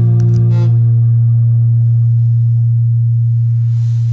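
Acoustic guitar chord left ringing, its low bass note sustaining steadily, with a few light string clicks about half a second in.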